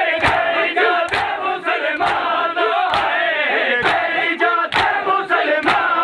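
A crowd of men chanting a lament together while beating their chests in matam, the open-handed blows on bare chests landing in unison about once a second.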